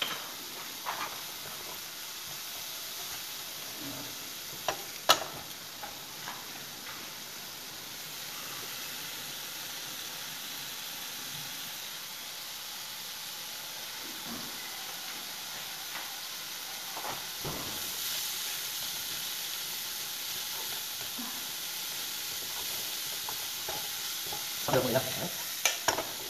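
Shrimp frying in oil in a wok on a gas burner: a steady sizzle that grows a little louder about two-thirds of the way through, broken by a few sharp clicks. Near the end a wooden utensil clatters in the pan as the shrimp are stirred.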